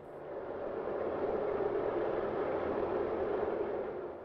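A rushing, whooshing noise with no clear pitch that swells in over the first second, holds steady and eases near the end.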